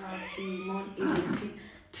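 A woman's voice making drawn-out, wordless sliding sounds while she thinks over a quiz answer, then a short breathy burst about a second in.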